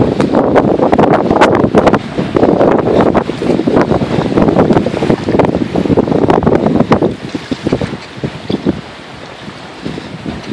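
Heavy wind buffeting on the microphone while an off-road vehicle drives over sand and gravel, with the vehicle's ride noise mixed underneath. The buffeting is loud and rough for about seven seconds, then eases off sharply.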